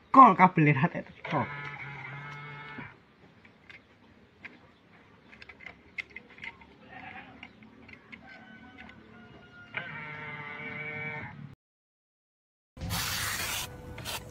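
A person laughing, then two drawn-out bleat-like calls, the second about eight seconds after the first.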